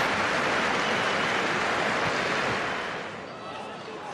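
Football stadium crowd noise reacting to a shot that goes off target: a broad roar that dies down about three seconds in.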